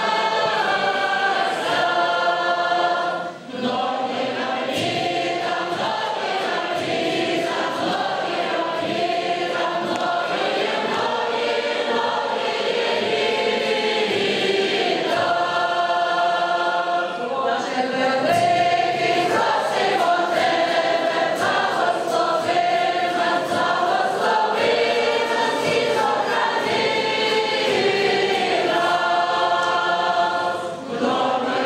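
A large mixed choir of men and women singing a Ukrainian folk song together in full voice, with short breaths between phrases about three seconds in and again around seventeen seconds.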